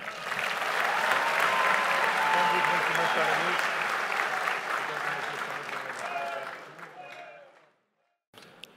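A large audience applauding, steady at first and dying away near the end.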